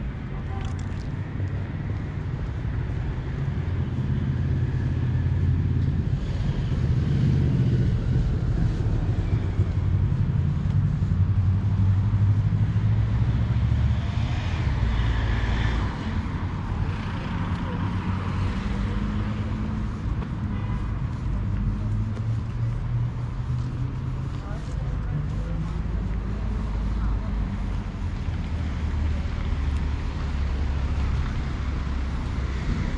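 Street ambience: traffic passing on a nearby road under a steady low rumble, with faint indistinct voices now and then.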